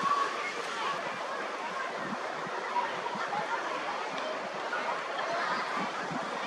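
Distant, indistinct voices over a steady rushing background noise.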